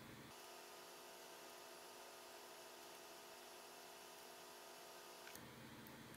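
Near silence: faint room tone with a few faint steady tones.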